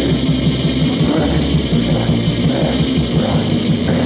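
Heavy metal band's demo recording: electric guitars playing fast, rapidly repeated low notes in a dense, loud, steady wall of sound.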